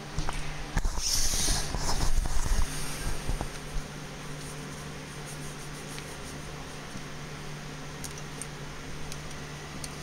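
Handling noise: irregular bumps and rustling for about the first three seconds, then a steady low hum with a few faint clicks.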